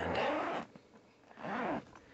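Zipper on a padded trumpet case being pulled open in two strokes: a short one at the start and another about one and a half seconds in, its buzz rising and falling in pitch as the pull speeds up and slows.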